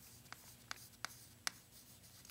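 Chalk writing on a chalkboard: faint scratching with several short, sharp ticks as the chalk strikes the board.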